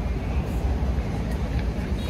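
Steady low rumble of urban background noise, such as distant city traffic.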